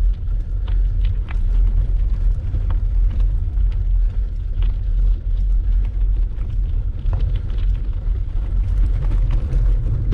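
Wind buffeting a bike-mounted camera's microphone while riding a bicycle on a gravel lane: a loud, steady low rumble, with faint scattered ticks of gravel under the tyres.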